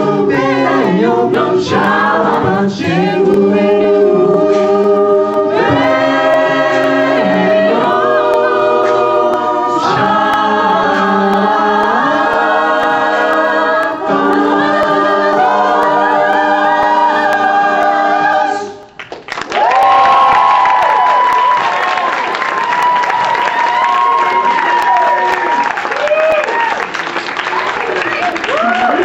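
Mixed-voice a cappella group singing in close harmony, with a male lead on a handheld microphone and held chords. The song ends suddenly about two-thirds of the way through, and audience applause and cheering follow.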